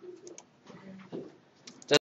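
Faint, indistinct voices in a room, with a few small clicks, ending in one short, loud click-like burst near the end.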